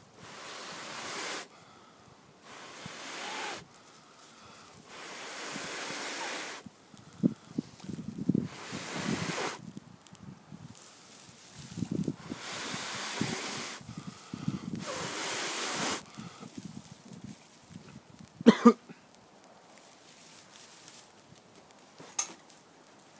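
Repeated long blows of breath into a dry grass tinder bundle holding an ember, about seven blows each lasting a second or more, to coax it into flame, with the dry grass rustling in the hands between blows. Two sharp knocks come close together about three-quarters of the way through.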